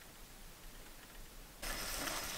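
Faint background hiss, then, about a second and a half in, the sizzle of chopped kimchi frying in a pan begins abruptly and much louder.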